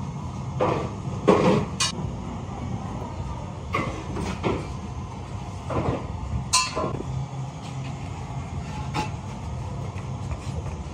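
Steady low rumble of factory machinery, with scattered knocks and clatters of ceramic toilets and kiln-car fittings being handled, the loudest about a second in and again past the middle.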